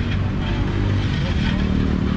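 Steady, loud low outdoor rumble, with faint voices in the background.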